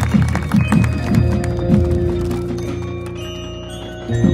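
Marching band playing: a run of low percussive strokes over a held note in the first couple of seconds, then the sound dying away gradually, with a few higher ringing notes near the end.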